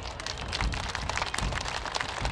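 Outdoor crowd applauding: many dense, irregular hand claps.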